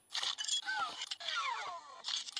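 Voice-controlled motorized Iron Man Mark L helmet answering a "close the suit" command with its closing and power-up sound effects: a string of falling electronic sweeps over a hiss, broken by small clicks.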